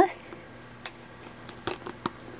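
A few light plastic clicks as plastic shower curtain hooks and a plastic deli basket are handled, two of them close together near the end, over a faint steady hum.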